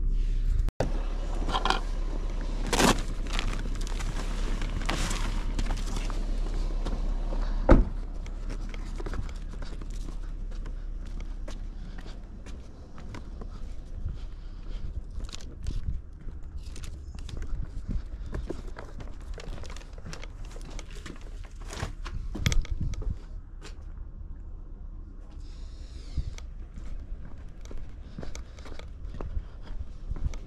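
Footsteps and handling noises: scattered short clicks, rustles and crinkles of paper, with one sharp loud knock about eight seconds in.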